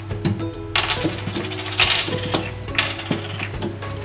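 Background music over a damp cloth scrubbing a soapy stainless-steel gas cooktop, with rubbing strokes coming about once a second.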